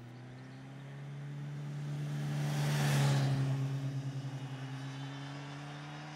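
Motorcycle riding past at a steady speed, its engine holding one even note that grows louder as it approaches, peaks about three seconds in, then fades as it rides away.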